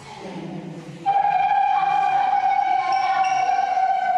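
A long held high note starts suddenly about a second in and holds steady, sinking slightly in pitch, with quieter higher notes joining over it.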